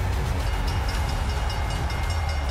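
Ominous background score: a heavy, steady low rumbling drone, with a quick high-pitched ticking that comes in about half a second in and fades near the end.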